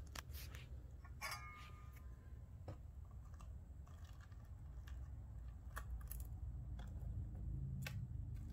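A few scattered light clicks and taps of metal feeding tongs against an egg and a plastic tub, over a low steady hum.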